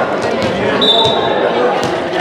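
Volleyball game in a gymnasium: indistinct player voices echoing around the large hall, with a few sharp ball hits or thuds and a brief steady high-pitched tone about a second in.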